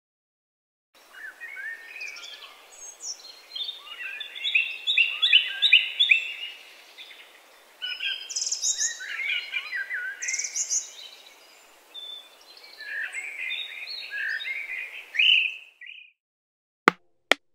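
Birds chirping and singing: a dense mix of short, quick, rising and falling notes over a faint outdoor hiss, starting about a second in and stopping just before the end.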